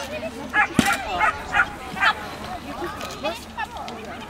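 Small dog barking in several short, sharp yips, with one sharp knock a little under a second in. Voices can be heard around.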